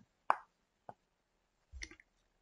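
Mouth sounds in a pause between phrases: a sharp click-like pop, a fainter click about half a second later, then a short soft breathy sound near the end.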